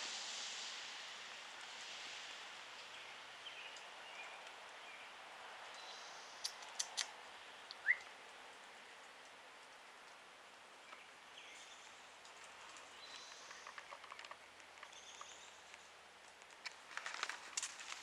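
Quiet outdoor garden ambience: a faint steady hiss with a few brief, distant bird chirps, one of them a short rising note about halfway through. A couple of sharp clicks come just before it, and rustling and clicking start near the end.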